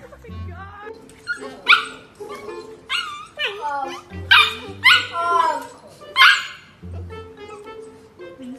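Corgis barking through a pet-pen fence: a run of short, high barks with a falling pitch, the loudest about six seconds in, over comic background music.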